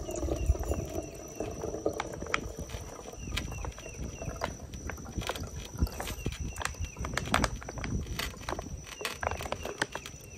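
The last of the hummingbird nectar dripping and trickling from a squeezed, nearly empty plastic bag into a glass feeder jar, with scattered small drips and bag-handling clicks. The bag is running out.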